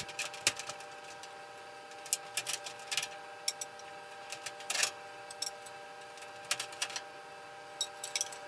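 Fluorescent tube pins clicking in the lamp holders (tombstones) as T8 tubes are twisted and pulled out of a ceiling fixture: scattered small clicks and taps in short clusters, over a faint steady hum.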